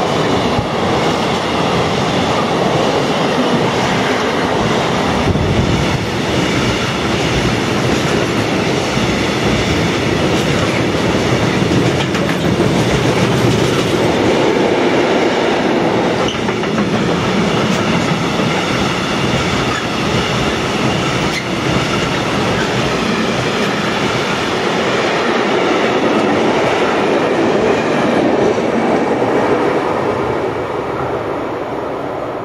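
Freight train wagons passing close by: a steady rumble and clatter of wheels on the rails that begins to fade at the very end as the last wagon goes by.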